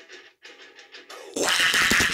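A long Furby toy sneezing through its small speaker: a softer electronic lead-in with a low steady hum, then a loud, hissy burst for the sneeze itself about one and a half seconds in, lasting close to a second.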